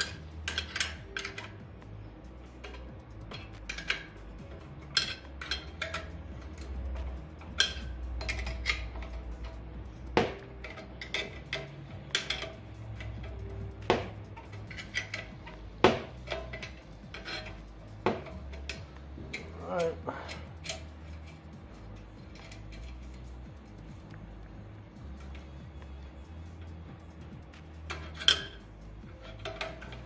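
Half-inch steel wrench clinking against the nuts and steel burn pot of a Harman pellet stove as its mounting nuts are undone: irregular sharp metallic taps and clicks, with a few louder clanks.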